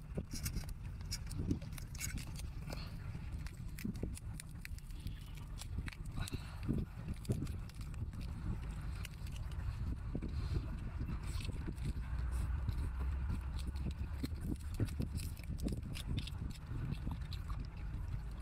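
Close-up eating sounds: shellfish shells being cracked and pulled apart by hand, and the meat sucked and chewed, with many crisp clicks and wet crackles over a steady low rumble.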